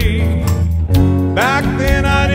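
Man singing a country song over his own acoustic guitar strumming. A held, wavering sung note ends just after the start, the guitar carries on alone for about a second, then the voice comes back in.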